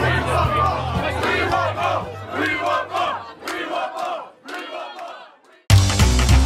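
Crowd of partygoers cheering and shouting at the end of a live band's song, with the band's last bass notes dying away about three seconds in. The crowd fades out, and loud guitar music cuts in suddenly near the end.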